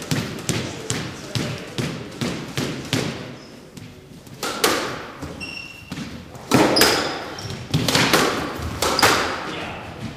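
A squash rally: the ball is struck by rackets and smacks off the court walls, several sharp echoing hits, with louder strikes in the second half. Short high sneaker squeaks on the wooden floor come around the middle.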